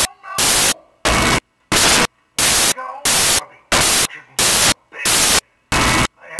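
Loud bursts of static hiss, each about a third of a second long, repeating regularly about one and a half times a second, with faint dialogue audible in the gaps between bursts.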